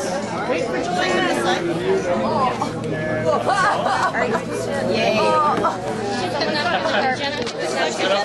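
A group of people chattering at once in a room, several voices overlapping with no single voice standing out.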